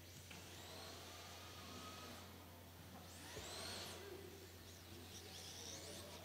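Faint whine of electric RC drift cars' motors, rising and falling in pitch several times as the two cars are throttled on and off through a tandem drift run.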